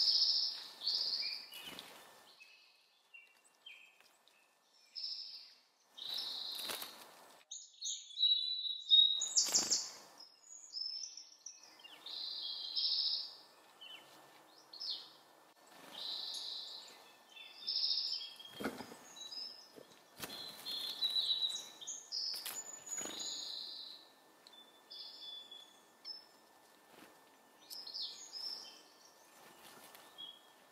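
Small songbirds giving short chip calls and chirps, many in quick succession throughout, with a few brief sharp clicks cutting in among them.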